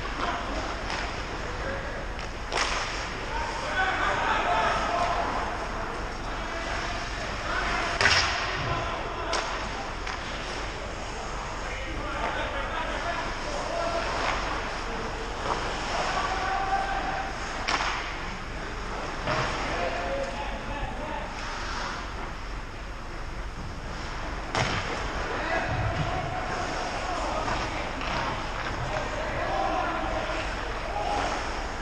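Ice hockey play: a handful of sharp cracks of sticks and puck striking, the loudest about eight seconds in, over indistinct calls from players on the ice.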